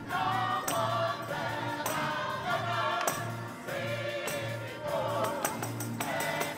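Live gospel music: a choir singing, backed by a drum kit with frequent cymbal and drum hits and short low bass notes about twice a second.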